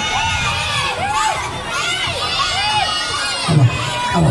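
A crowd of children shouting and cheering, many high voices overlapping, with a louder burst near the end.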